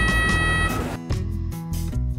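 Electrosurgical generator sounding its steady electronic activation tone while the yellow cut pedal of its foot switch is held down, which signals that cut output is active; the tone cuts off under a second in. Background music plays throughout.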